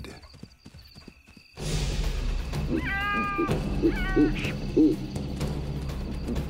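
Lions snarling and yowling as they mob a hippo, with two held, high yowls about a second apart, over a music score whose low steady drone starts suddenly after a quiet first second and a half.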